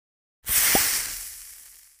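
A hiss sound effect that starts suddenly and fades away over about a second and a half, with a brief low knock just after it starts.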